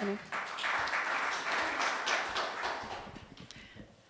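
Audience applauding, the clapping dying away over the last second or so.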